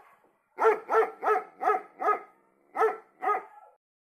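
A dog barking: a quick run of five barks, about three a second, then two more after a short pause.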